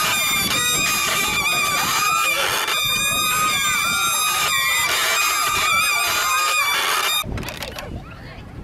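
Wooden Ferris wheel squeaking as it turns: a loud, high, wavering squeal that breaks off and resumes now and then, and cuts off suddenly near the end.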